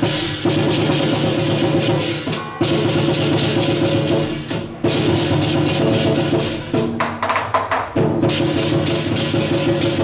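Lion dance percussion band playing a fast, dense beat of drum and crashing cymbals over a ringing gong, with short breaks in the rhythm a few times.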